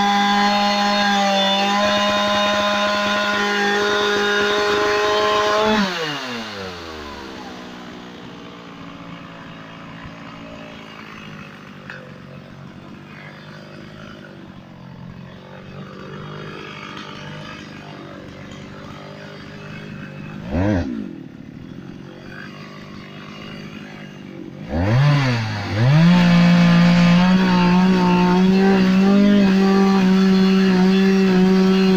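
Two-stroke chainsaw held at high revs, then dropping to a quieter idle about six seconds in. A brief throttle blip comes about twenty-one seconds in, and the saw is revved up again about five seconds before the end and held there.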